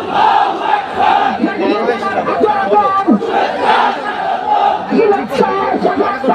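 Political slogan-shouting: a man shouts short slogans into a handheld microphone over a loudspeaker, and a crowd shouts along with him in a steady, unbroken run of loud voices.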